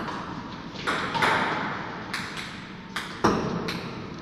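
Table tennis rally: the celluloid ball clicking off the rackets and bouncing on the Stiga table, about seven sharp knocks with a short echo off the hall walls. The loudest knock comes about three and a quarter seconds in.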